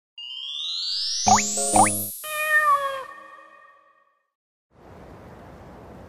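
Playful sound-effect sting over a title animation: a rising sweep, two quick springy boings, then a short falling, wavering cartoon-like call. After a brief silence, a faint steady hiss of background ambience sets in about five seconds in.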